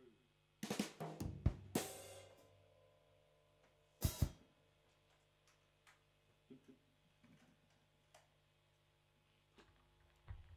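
Drum kit played in a few loose, isolated hits rather than a groove: a quick cluster of drum and cymbal strikes about half a second in, one cymbal left ringing, then two more hits about four seconds in and only faint taps after.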